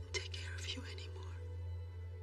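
Low, steady drone of a film score, with a brief breathy whispered voice over it in the first second and a half.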